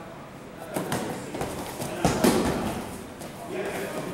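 Bodies, knees and wrestling shoes knocking and scuffing on a grappling mat during a sit-out turtle escape. The thuds come irregularly, loudest about two seconds in as the bottom man turns over on top.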